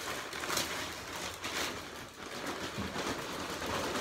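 Multipurpose compost poured from a plastic sack into a raised bed: a steady rustle and slither of loose compost and crinkling plastic, with a few louder scrapes along the way.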